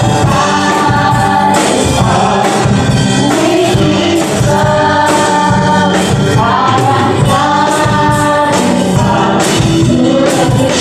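Live church praise band playing a gospel worship song, with lead and backing singers holding long notes over electric guitar, bass, keyboard and drums, steady and loud.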